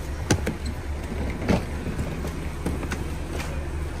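A car engine idling with a steady low rumble, with several short knocks and clatters from a hard-shell suitcase being handled and lifted at the open tailgate, the loudest about a second and a half in.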